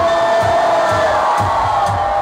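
Club music: one long held high note over a steady low beat of about three thuds a second, with crowd noise behind it.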